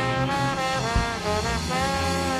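Live band with a horn section, electric bass and drum kit playing a jazzy instrumental; the horns hold notes over the bass line, with a few notes sliding down in pitch about a second in.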